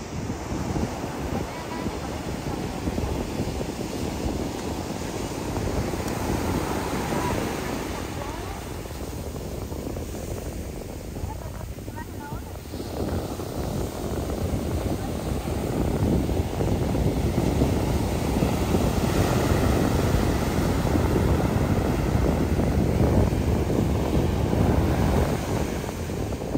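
Rough surf breaking and washing up the beach, a steady rushing that swells louder about halfway through, with wind buffeting the microphone. The waves are very strong and the sea is rough.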